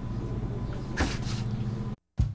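A chainsaw being slid and turned round on a plywood tabletop: a brief scrape about a second in, over a steady low hum.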